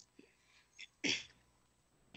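A short, sharp breathy burst from a person, about a second in, between quiet moments on a call-in line.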